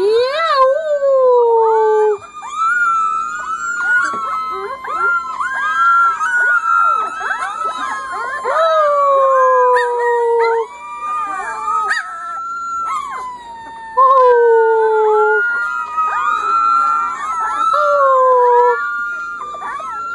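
A litter of three-week-old Corgi puppies howling together in chorus. Several high voices overlap and waver in pitch, with long falling howls lasting a second or two each.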